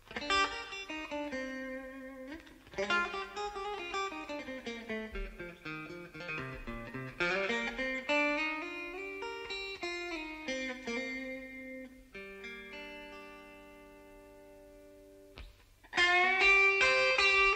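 Slow blues guitar playing: single-note runs that fall and rise in pitch, then a held chord that slowly fades out over the last few seconds.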